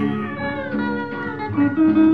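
Backing music from the original film-song track, a melodic instrumental fill with gliding notes between two sung lines.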